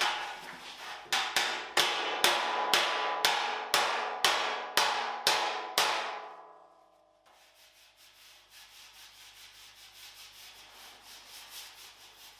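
A body hammer strikes a bare steel car fender from behind, about two blows a second, each hit ringing. The blows push out a dent that welding heat left in the panel. They stop after about six seconds, followed by faint, quick rubbing strokes against the panel.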